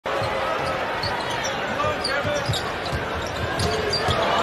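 A basketball dribbled on a hardwood court, its low bounces coming about twice a second, over the steady murmur of an arena crowd.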